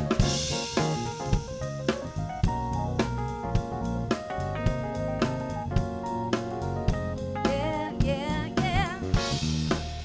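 Live soul band playing an instrumental passage: Roland RD-64 stage piano chords over a drum kit with snare, hi-hat and cymbals keeping a steady beat, and a short wavering melodic run near the end.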